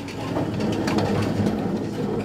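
Chairs scraping and feet shuffling as a seated gathering rises to its feet, a dense rumbling clatter of many small knocks.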